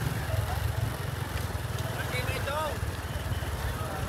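Outdoor road ambience of motorbike traffic and a crowd: a steady low rumble, with a faint voice about two seconds in.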